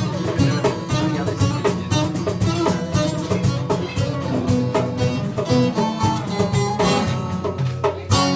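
Instrumental passage on a saz, a long-necked Turkish lute, playing quick runs of plucked notes, with a darbuka goblet drum keeping the rhythm.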